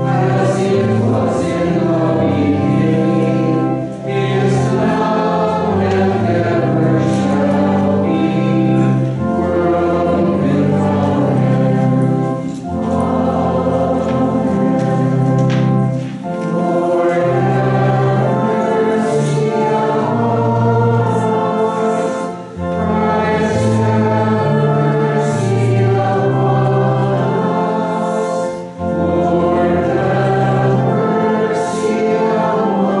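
Congregation singing a hymn together, in phrases with short breaks between them.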